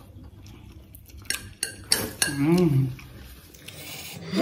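Metal forks clinking and scraping against ceramic plates of noodles, with a few sharp clicks a little over a second in. About halfway through, a short voiced sound from one of the eaters rises and falls in pitch.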